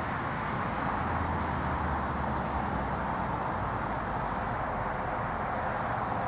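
Steady outdoor background noise, a low rumble with hiss, and a deeper hum that swells from about one second in and fades after three and a half seconds.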